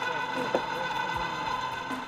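Truck camper's electric jack motors running with a steady whine while the camper is lowered onto the pickup bed. Faint voices are heard over it.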